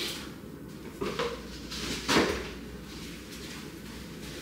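Three short knocks about a second apart, the third the loudest, like household handling in a kitchen.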